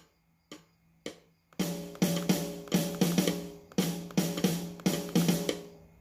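Sampled EZDrummer 2 drum kit played through a monitor speaker: a few soft clicks, then from about a second and a half in a quick run of drum and hi-hat hits, about three or four a second.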